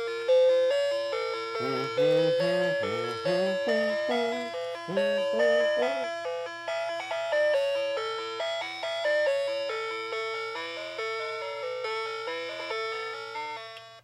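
Electronic children's tune from the sound box of a Megcos pull-along musical toy telephone, set off by pressing a number key. A simple melody of short notes, each struck and fading, plays over a low steady hum.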